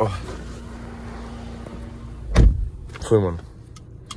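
A car door shutting with one heavy thud about halfway through, over a steady hum inside the car.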